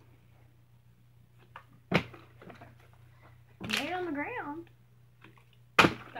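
Two sharp knocks about four seconds apart, a thrown object landing on a hard surface, with a brief wavering voiced "oooh"-like sound from a child between them.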